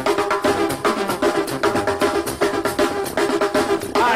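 Live pasito duranguense band music in an instrumental passage: rapid, even snare and tambora drumming under sustained keyboard chords, with no singing.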